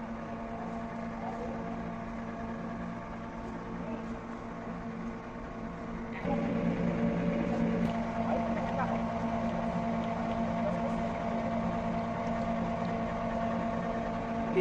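Cold-press screw oil expeller running steadily while crushing ajwain (carom) seed: a constant mechanical hum with several held tones. About six seconds in it becomes suddenly louder and closer.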